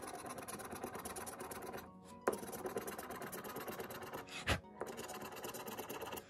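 A coin scraping the coating off a scratch-off lottery ticket in rapid back-and-forth strokes. The scraping pauses briefly about two seconds in, and there is a single knock about four and a half seconds in. Faint background music runs underneath.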